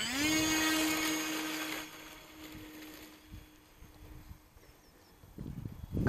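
Electric motor and propeller of a radio-controlled Carbon Cub model plane throttling up for take-off from a rough dirt strip. The whine rises sharply in pitch, holds steady and loud for about two seconds, then drops away and fades.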